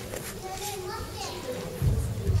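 Children's voices chattering and calling in a large gymnasium hall, with a low thump near the end.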